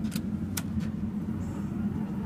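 Dover hydraulic elevator cab: a steady low hum, with two sharp clicks in the first half second.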